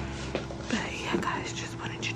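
Soft, indistinct whispering and murmured voices over a faint steady hum.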